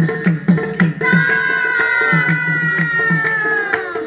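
Women's chorus singing an Assamese Aayati naam devotional song, holding a long phrase that slowly falls in pitch. A steady drum beat and small hand cymbals keep time underneath.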